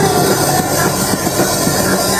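Punk rock band playing live at full volume: distorted guitars, bass and drums in a dense, unbroken wall of sound, with the singer shouting into the microphone.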